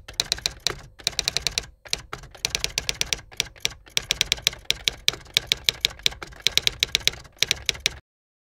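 Typewriter keystroke sound effect: quick runs of sharp key clacks, several a second, broken by a few short pauses.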